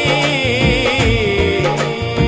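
Music of a Dogri devotional song: a wavering melody line over a steady drum beat.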